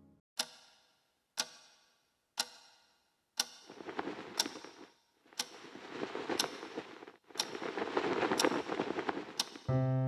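Clock ticking, one sharp tick a second, in a quiet room. A few seconds in, a rushing noise swells up beneath the ticks and grows louder, and piano music comes in near the end.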